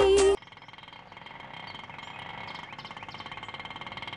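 The serial's theme song, with a woman singing, cuts off abruptly just after the start. Quiet street sound follows with the steady running of a small auto-rickshaw engine, growing slowly louder as the rickshaw approaches.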